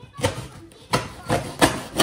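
Knife blade cutting and scraping through packing tape on a cardboard box, about five short sharp strokes over two seconds.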